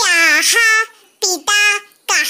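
A young child's high voice in three short sing-song phrases, some notes held.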